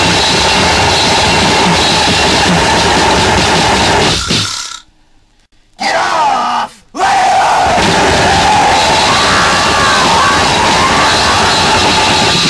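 Harsh noise music: a loud, dense wall of distorted noise with voices yelling within it. It cuts off suddenly about four and a half seconds in. After a short shout about six seconds in, a second blast of noise starts and runs on.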